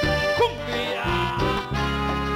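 Instrumental passage of a Latin tropical band song: a melody in accordion-like tones over a steady bass line.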